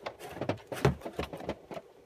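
Handling noise: a string of light clicks and knocks from a hand-held device and the phone being moved, with one louder knock a little before the middle.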